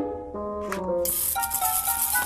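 Cartoon noise-making sound effects: a run of short held musical notes stepping up and down in pitch, then from about a second in a rattling hiss like a shaker over a held tone.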